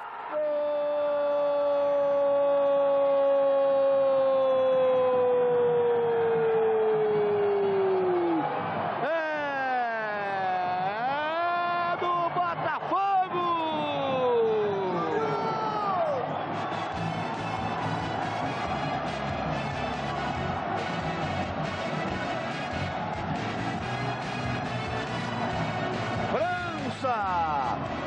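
A TV football commentator's long held shout of "goal", one sustained note whose pitch slowly sinks over about eight seconds, followed by several seconds of excited shouting with swooping pitch. Stadium crowd noise and music fill the rest.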